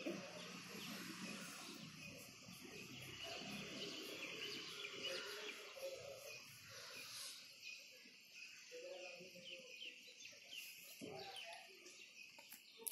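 Faint background chirping of birds: many short, quick chirps repeating over a low, steady ambient hiss, with faint indistinct murmurs now and then.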